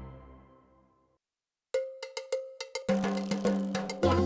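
Cartoon background music fading out, a moment of silence, then a new piece of music starting with a run of sharp percussion strikes over a held note, joined by a bass line and fuller band about three seconds in.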